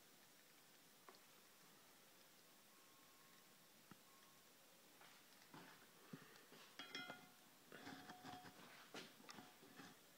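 Near silence: room tone, with faint scattered clicks and small knocks in the second half.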